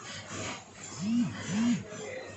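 Two short, low animal calls about half a second apart, each rising and then falling in pitch, over faint background chatter.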